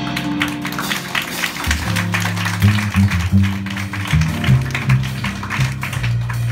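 Live small-group jazz: an upright bass plays a line of plucked low notes starting about two seconds in, over a fast, steady patter of light percussion.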